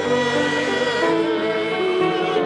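Liturgical singing in a synagogue service: a voice holding long notes with vibrato over steady sustained accompaniment.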